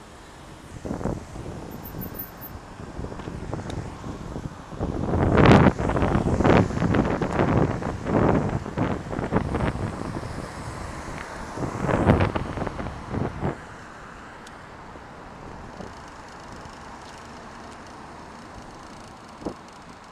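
Road traffic and wind buffeting a moving camera's microphone, in uneven surges. It is loudest about five to seven seconds in and again around twelve seconds, then settles to a steadier, quieter rush.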